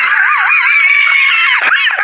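A loud, high-pitched scream with a wavering pitch, held for about a second and a half and falling away near the end.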